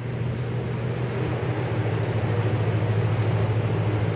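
Steady low mechanical hum, like a building's ventilation or heating fan, growing slightly louder as it goes.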